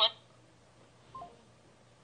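A voice finishing the word "what?" at the very start, then quiet room tone with one brief, faint tone about a second in.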